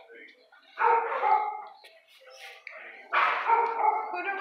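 A dog barking in a shelter kennel: two bouts of barking, one about a second in and one about three seconds in.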